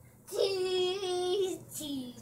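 A young boy's voice singing out one long held note, then a shorter, lower note near the end.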